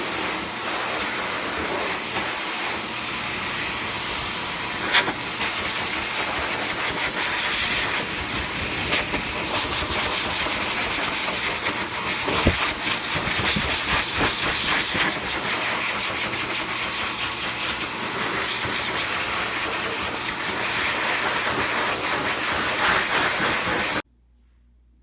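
Blow dryer blowing air steadily on a wet dog's coat: an even hiss with a faint motor hum underneath, with a few brief knocks. It starts and stops abruptly.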